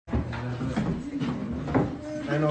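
Phone-recorded room audio: low, muffled men's voices talking in the background, with a few faint knocks.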